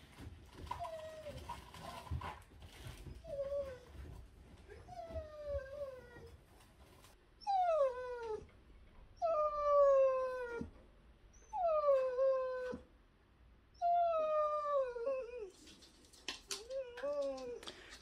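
A dog whining: a string of high whines, each falling in pitch, growing louder in the second half. It is whining at being kept away from where its owner is cleaning the guinea-pig cage.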